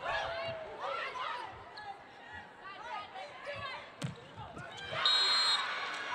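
Volleyball rally on an indoor court: athletic shoes squeak on the floor in short chirps, with one sharp ball hit about four seconds in. About five seconds in comes a brief loud referee's whistle, ending the rally on a point.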